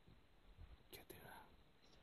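Near silence, broken about halfway through by a couple of sharp clicks and a brief whisper close to the microphone.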